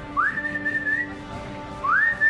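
Two long whistled notes, each sliding up and then held high with a slight waver. The first stops about a second in; the second begins near the end.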